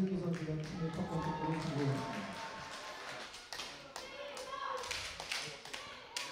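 Indistinct voices with scattered sharp taps and thuds, as of match sound from the pitch. The voices are strongest in the first two seconds and fade after.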